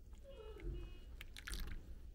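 Hot water poured in a thin stream from a gooseneck kettle into a glass mug of frothy coffee, the pour stopping within two seconds. A short falling whine sounds early in the pour.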